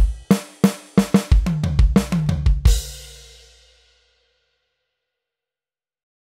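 Roland VAD504 electronic drum kit played through its sound module: a beat of kick and snare strokes that runs into a fill of pitched tom hits. The fill ends about two and a half seconds in on a final accented hit that rings out for about a second, then silence.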